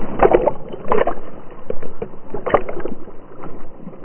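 Water splashing and sloshing around a swimming dog, heard up close from a camera on its back, with three louder splashes about a quarter second, one second and two and a half seconds in.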